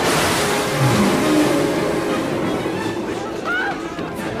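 Loud rushing, churning water as a huge sea monster surges up out of the sea, a film sound effect, with brief shouts near the end.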